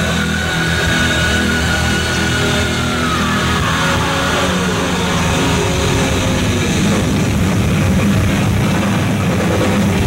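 Thrash metal band playing live: distorted electric guitars, bass and drums at full volume. A long high note is held and then slides down in pitch about three to five seconds in.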